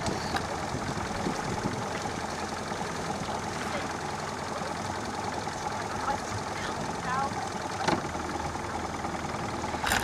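Motorboat engine running steadily at low revs while towing an inflatable ring.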